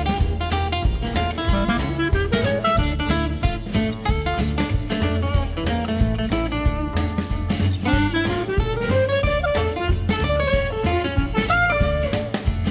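Background music with a steady beat and bass, its melody sliding upward twice.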